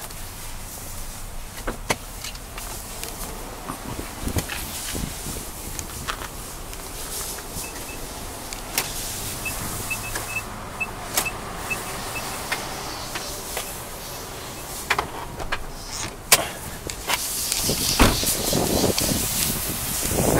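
Nissan Elgrand E52's power sliding door motor whirring, with a run of short high warning beeps near the middle, over the faint idle of its 3.5-litre V6. Scattered clicks and knocks run through it.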